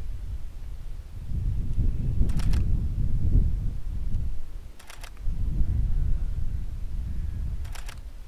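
DSLR shutter firing three times, roughly two and a half seconds apart, each release a quick double click, as frames of an exposure bracket are shot a third of a stop darker each time. A low, gusty rumble of wind on the microphone runs underneath and is the loudest sound.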